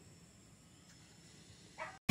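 Near silence, broken near the end by one short dog yelp in the distance.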